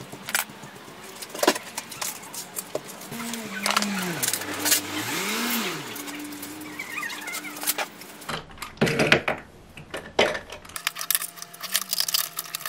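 Repeated clicks and knocks of household items being handled and moved while tidying. In the middle a low voice hums a slowly rising and falling tune for a few seconds.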